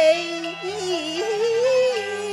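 A woman singing a Cantonese opera song into a microphone, her melody sliding and wavering, over instrumental accompaniment.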